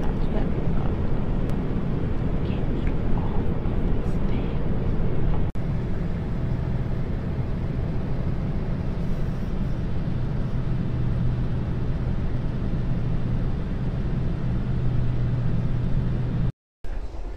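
Steady low drone of an airliner cabin in flight. From about six seconds in, a constant low engine hum sits on top of the roar.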